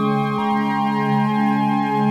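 Ambient new-age music of sustained keyboard synthesizer tones held as a slow chord, with a slight change of notes about half a second in.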